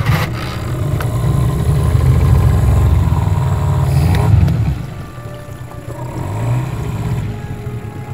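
Small outboard motor pull-started, catching at once and running loud, then settling to quieter, steady running about five seconds in.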